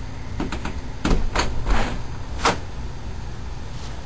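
A handful of short knocks and clacks in the first two and a half seconds, the last and sharpest about two and a half seconds in, over a low steady hum.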